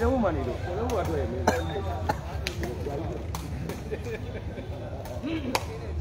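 Several sharp smacks of a sepak takraw ball being kicked and struck, spread out over a few seconds, with low crowd chatter underneath.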